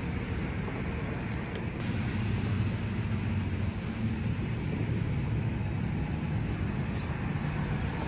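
Steady road traffic on the neighbouring highway bridge, cars and trucks running as a continuous rumble, with a heavier low engine drone a couple of seconds in that fades again.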